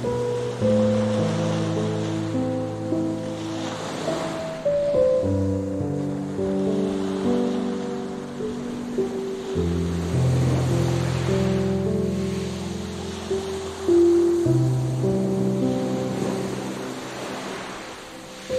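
Soft, slow relaxing music of long held notes over the sound of ocean surf washing onto a beach, the wash swelling every few seconds.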